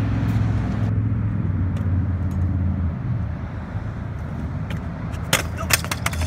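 Low, steady rumble of stunt-scooter wheels rolling on concrete, easing off about halfway through. Near the end come a few sharp clacks of the scooter hitting the ground.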